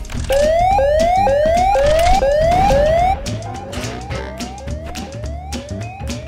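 Electronic whooping alarm: a rising tone repeated about twice a second, loud for the first three seconds and then quieter, over background music with percussion.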